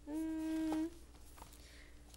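A woman humming a closed-mouth "hmm" on one steady note for just under a second, rising slightly at the end.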